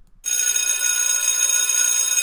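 Loud bell-like ringing tone coming unexpectedly out of a speaker: a cluster of steady tones that starts abruptly and begins fading slowly after about two seconds.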